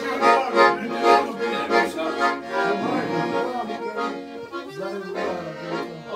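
Piano accordion playing a tune, its chords pulsing in a quick rhythm.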